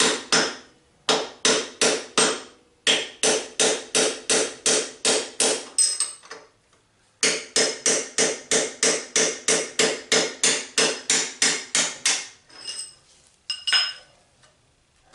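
Hammer striking a punch to drive a steel steering-head bearing race out of a motorcycle frame's head tube: quick, even metal-on-metal taps, about three a second, in runs with short pauses. A few fainter clinks near the end as the race comes free.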